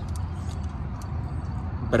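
Steady low background rumble, with a few faint light clicks over it.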